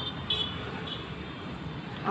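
Outdoor background: a low, steady rumble of distant road traffic, with a few brief high-pitched chirps or toots about a third of a second and a second in.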